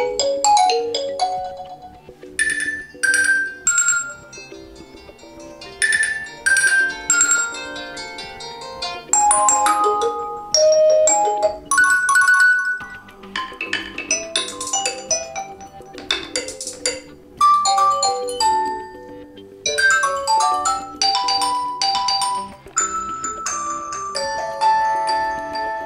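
Stock ringtones of a Nokia 5.1 Plus played one after another through the phone's speaker as each is selected in the ringtone list. They are short melodies of struck, chiming notes, each cut off when the next one starts, changing every few seconds with a brief break about halfway.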